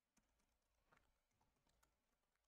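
Very faint computer keyboard typing: about half a dozen soft keystrokes, barely above near silence.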